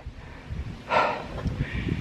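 Low, uneven rumble of wind and handling noise on a hand-held camera's microphone while a man walks with the camera, with one short puff of breath about a second in.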